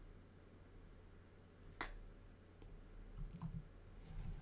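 Near silence: quiet room tone with one sharp click a little under two seconds in and a fainter click shortly after.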